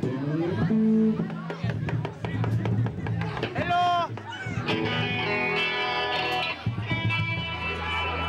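Electric guitar and bass guitar played live through amplifiers, sustained notes and loose phrases rather than a full song with drums, with voices over them.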